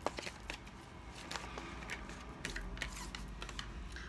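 Tarot cards being handled and shuffled: a faint run of soft, irregular card flicks and clicks.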